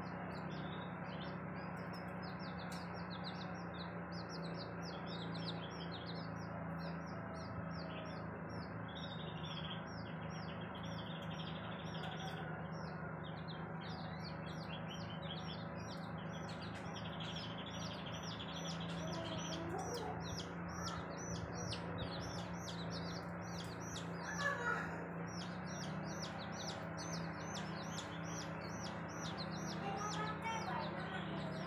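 Chicks peeping continuously in rapid, short high calls, with a hen clucking a few times in the second half, the loudest cluck about three-quarters of the way through. A steady low hum runs underneath.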